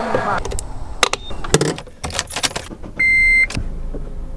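Clicks and clunks of a gas-pump nozzle and fuel hose being handled at the car. Near the end comes a single steady electronic beep, about half a second long.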